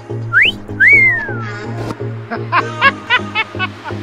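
Background music with a steady bass beat, overlaid with an edited-in wolf whistle (a quick rising whistle, then a longer one that rises and falls) and then a short burst of high-pitched laughter near the end.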